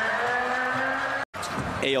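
Arena crowd noise mixed with a sustained tone that rises slowly in pitch, cut off abruptly about a second in. Quieter game-floor sound follows.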